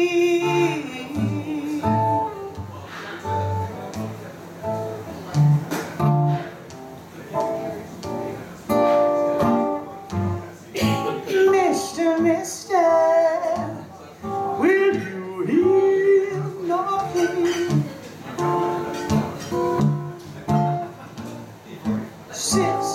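Live blues song: an acoustic guitar picked and strummed, with a woman's voice singing over it.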